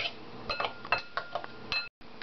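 A metal utensil clinking against a Corelle glass bowl as diced tomatoes and onions are stirred: a string of about eight light, ringing taps that cuts off suddenly near the end.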